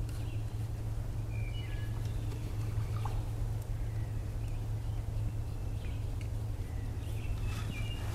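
Woodland songbirds giving short, scattered high chirps over a steady low hum.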